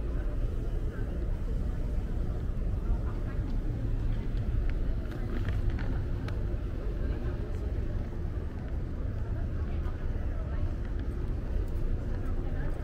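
Busy city-street ambience: a steady low rumble of traffic with indistinct chatter of passers-by and a few short clicks around the middle.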